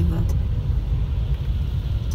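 Steady low rumble of a car's engine and road noise, heard from inside the cabin while driving slowly.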